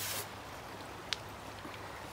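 Creek water running steadily around a wader's legs as he stirs the streambed with his feet for a kick-net sample. A brief splash comes at the start and a single sharp tick about a second in.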